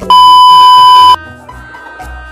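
A loud, steady, high-pitched test-tone beep, the kind that goes with TV colour bars, dropped in as an editing effect. It lasts about a second and cuts off suddenly, with background music running on after it.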